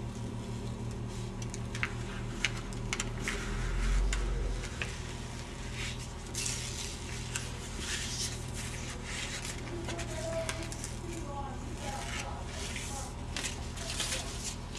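The top membrane of opaque heat-transfer paper being peeled away by hand, with a soft crackling rustle of film lifting from its backing. The crackling is busiest about halfway through.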